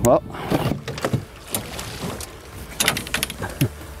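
Scattered knocks and clicks of gear being handled on a fishing boat's deck, with a few short breaths or vocal sounds in the first second.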